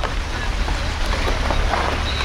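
Car engine running with a steady low hum while the tyres roll over a wet, flooded road, water hissing and splashing under the wheels, with wind on the microphone held out of the window.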